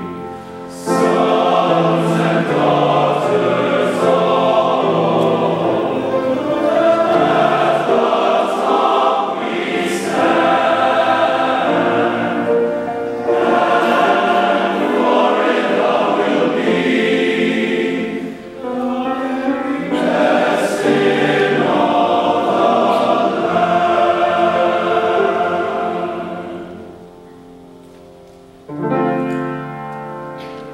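A large men's glee club singing a fight-song medley in full chords, with a brief break about two-thirds of the way through; the singing fades away near the end.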